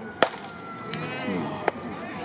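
A fastball popping into a catcher's leather mitt with one sharp crack, followed about a second and a half later by a fainter snap, over low chatter of voices in the stands.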